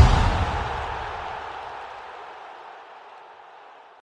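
Noisy, boom-like sound-effect hit ringing out and fading steadily to near nothing over about three seconds.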